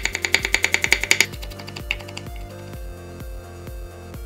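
Rapid knife chopping: a chef's knife mincing garlic cloves against a wooden cutting board, about eight quick strokes a second for the first second or so, then stopping. Background music with a steady bass beat runs throughout.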